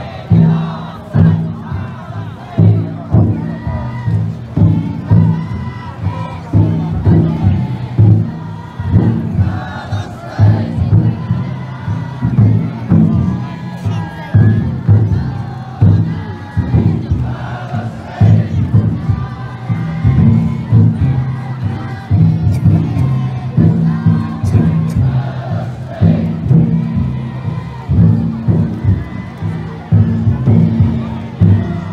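Taiko drum inside a futon daiko festival float beaten in a steady, regular rhythm. The many bearers shout and chant along with it as they carry the float.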